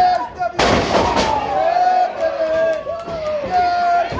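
A wrestler slammed down onto the wrestling ring about half a second in: one loud crash of the ring's canvas-covered boards, with a short ringing decay. Shouting voices follow.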